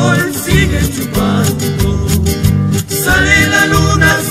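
Recorded Ecuadorian Andean chagra music with guitars, bass and a steady beat.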